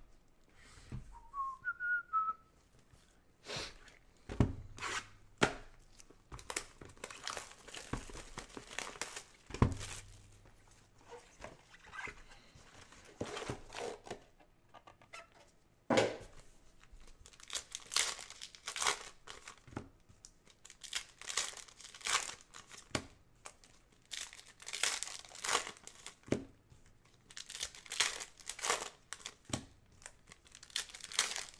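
Foil trading-card packs being torn open and crinkled by gloved hands: a long run of crackling rips and rustles, thickest in the second half. There are a few dull knocks on the table in the first ten seconds, and a brief faint whistle about a second in.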